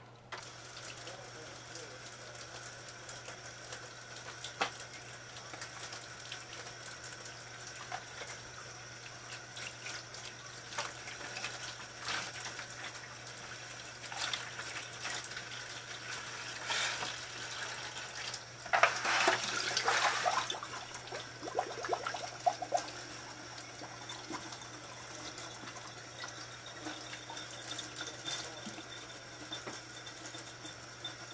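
Kitchen tap running steadily into a stainless steel sink, with scattered clicks and knocks from handling and a louder clatter about nineteen seconds in. A low steady hum runs underneath.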